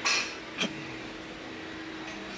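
A Cybex cable machine being worked through a lunge pull, heard as a short rush of noise at the start and one brief knock about half a second in, over a steady low hum.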